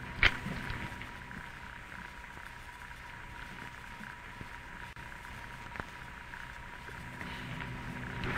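A match struck once near the start, then faint crackling as a tobacco pipe is lit and puffed. Under it runs the steady hum and hiss of an old broadcast recording.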